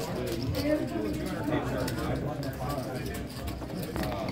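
Indistinct murmur of several voices talking over one another around a poker table, with light clicking of casino chips.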